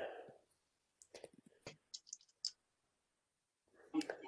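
A few faint, short clicks at a computer, spread over about a second and a half, after the tail of a voice at the start.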